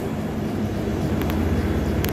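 London Underground Bakerloo line train (1972 Stock) at the platform, its motors making a steady low rumble that builds slightly as it starts to pull out, with a few faint clicks.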